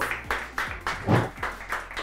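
A small group clapping, uneven claps a few times a second, with a short voice sound about a second in.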